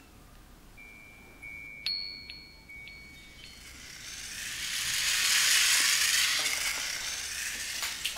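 A chime-like sound effect. A high thin tone rings from about a second in, and a higher ring with a few sharp ticks joins it. From about halfway, a bright shimmering wash swells up, peaks and slowly fades.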